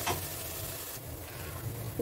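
Blended spice paste of shallots, green chillies, coriander and mint frying in oil in an aluminium pressure cooker, with a soft, steady sizzle as it is stirred with a wooden spatula: the base masala frying until its raw smell cooks off.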